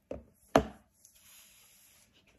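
Two sharp knocks about half a second apart as the iPhone and its box are handled on a tabletop, the second louder, followed by a faint rustle.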